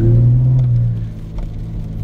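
A car's engine and road noise heard from inside the cabin while driving: a steady low hum, louder at first and easing off about a second in.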